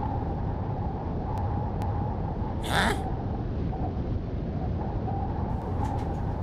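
Steady low background rumble, with one short animal cry a little under three seconds in.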